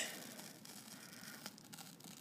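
Faint tearing of a peel-off clay mask film as it is pulled away from the skin of the face.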